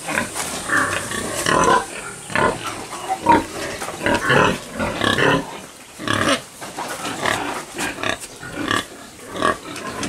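Pigs grunting in a piggery, a dense, irregular run of short calls one after another.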